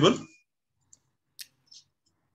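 Three faint, separate clicks of a computer mouse, spaced a little under half a second apart, after the tail of a spoken phrase.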